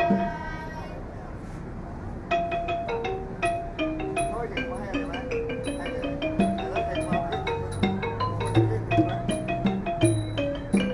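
Traditional Thai ensemble music led by the ranad, the Thai wooden xylophone, playing quick struck melodic notes. The music breaks off just after the start and resumes about two seconds later, and a low drum comes in near the end.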